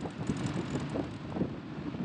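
Wind buffeting the microphone in uneven gusts over the running diesel engine of a Caterpillar 535D skidder driving along a paved road.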